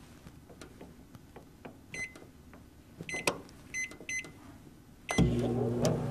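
Admiral microwave oven being started: three short electronic keypad beeps and a sharp click, then about five seconds in the oven starts running with a steady hum for its one-minute heating.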